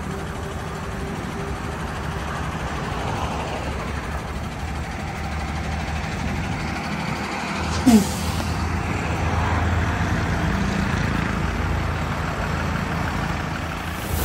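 Diesel engine of a loaded Tata Prima 5530 tractor-trailer tipper running as the truck moves off, its low rumble growing stronger partway through. A short, sharp burst stands out about eight seconds in.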